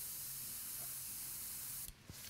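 Airbrush spraying paint: a steady hiss of air that cuts off just before the end as the trigger is released.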